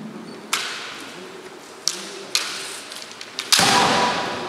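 Bamboo shinai knocking against each other in a few sharp clacks during a kendo bout. Near the end comes a heavy stamp of a bare foot on the wooden floor with a strike, the loudest sound, ringing on in the hall.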